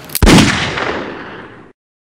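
A single revolver shot: a faint click, then a loud blast that dies away over about a second and a half and cuts off suddenly into silence.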